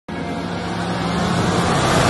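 A rushing whoosh of noise that swells steadily louder, a riser effect building into the opening theme music.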